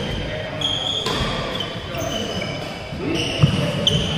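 Badminton doubles rally on a wooden indoor court: rackets striking the shuttlecock, shoes squeaking on the floor and feet landing. There are a couple of sharp hits near the end.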